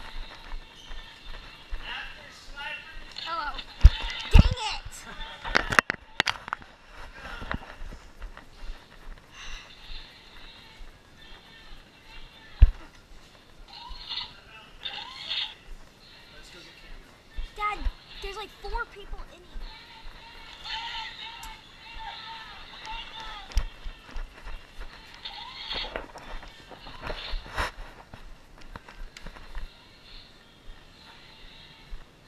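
Indistinct voices calling out among players on the move, with thumps and sharp knocks from footfalls and bumps on a hard floor. The loudest knocks come about four, six and twelve and a half seconds in.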